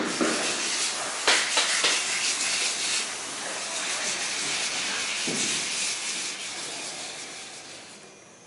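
Fine 120-grit sandpaper rubbed by hand over a yacht hull's epoxy and Jotamastic coating, in repeated scratchy strokes that take down the lumps before the next coat. The sanding gets fainter over the last few seconds.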